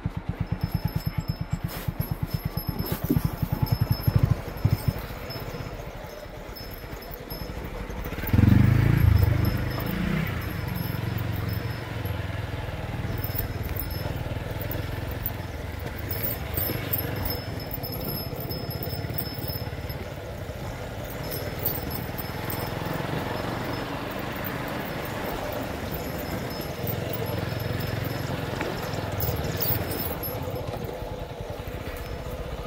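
Motorcycle engine running as the bike rides along a rough dirt trail, with a rapid pulsing in the first few seconds and a loud low rumble about eight seconds in.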